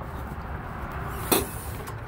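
A folding van passenger seat's release mechanism giving a single sharp click about a second in, over a steady low background rumble.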